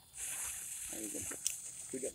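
Hiss of a jet-flame torch lighter lighting a firework fuse, which catches and sputters sparks; a sharp click comes about a second and a half in, after which the hiss turns thinner.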